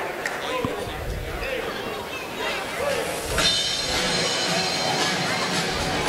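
Spectator chatter echoing in a gymnasium, getting louder and busier about three and a half seconds in.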